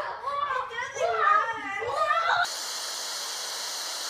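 A child's voice calling out excitedly for about the first half, then an abrupt cut to a steady, even static hiss, TV white noise used as a transition.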